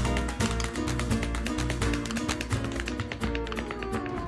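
Flamenco music with a rapid run of dancers' heel-and-toe taps over guitar notes. A falling tone glides down near the end.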